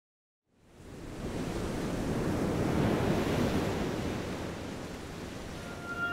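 A rushing, surf-like ambient noise fades in after a moment of silence, swells and then eases back. A faint high tone enters near the end, just before the music starts.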